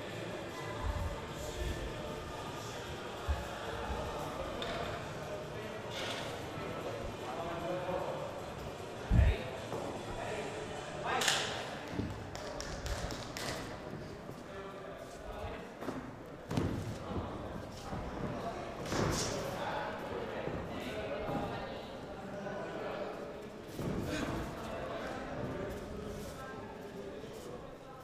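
Indistinct voices echoing in a large hall, with scattered thuds and knocks. A single low thump about nine seconds in is the loudest sound, and a sharp crack follows about two seconds later.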